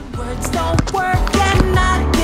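Background music starts: a track with a steady drum beat and a heavy bass line under a melodic lead.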